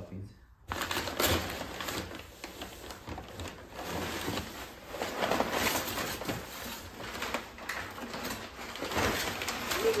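Brown kraft packing paper crinkling and rustling as it is crumpled and pulled out of a cardboard box, starting suddenly about a second in and going on without a break.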